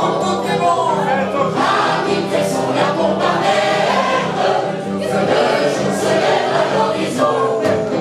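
Mixed group of men and women singing together in chorus, with an electric keyboard playing along.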